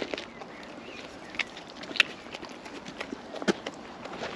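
A few short, sharp clicks and light scuffs, about four over the span, over a faint outdoor background.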